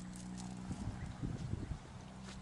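Footsteps on a dirt path: a run of soft, irregular low thuds starting a little under a second in, over a steady low hum.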